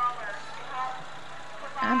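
A pickup truck towing a parade float, its engine running with a steady low hum under faint voices, and a commentator starting to speak near the end.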